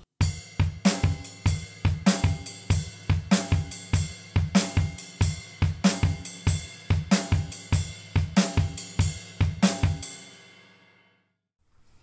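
Drum kit playing a swing shuffle: the ride cymbal keeps a shuffled eighth-note triplet pattern over a steady bass drum, for about ten seconds. It stops near the end and the cymbal rings out.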